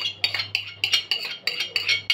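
A metal spoon scraping and clinking in a quick, uneven run of strokes, scooping tomato paste from its container into a metal pan.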